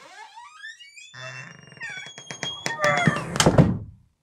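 Sound effects for an animated intro: a quick series of rising swoops, then held tones with a string of sharp clicks, building to a loud climax that cuts off suddenly at the end.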